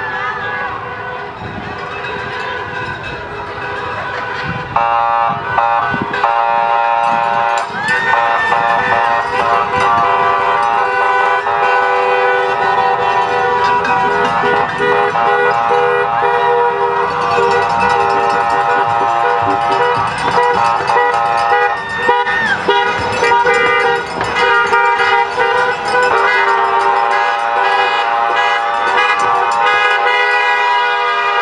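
Many car horns honking at once, overlapping into a continuous blare from about five seconds in, as a line of cars drives slowly past.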